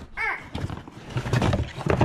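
A brief high-pitched voice just after the start, then cardboard packaging being handled, ending in a sharp knock near the end.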